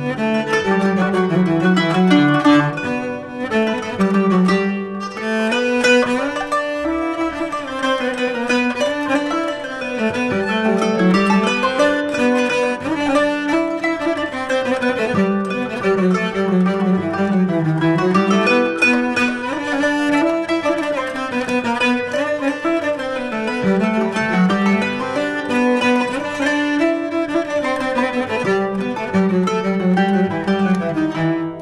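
Turkish classical ensemble playing the song's instrumental opening: bowed strings carry a melody over plucked strings, with a low bowed line moving underneath and no voice yet.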